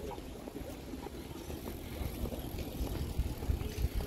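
Outdoor city-street background noise: a steady low rumble that grows louder and more uneven near the end.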